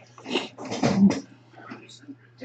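Two short, breathy animal vocal sounds, about a third of a second and a second in.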